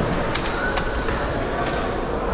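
Steady din of a busy station entrance hall at a baggage security checkpoint, with a couple of light clicks about a third of a second and about a second in.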